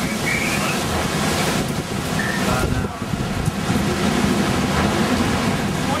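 Strong hurricane wind blowing through trees and buffeting the microphone, a steady loud rush of noise.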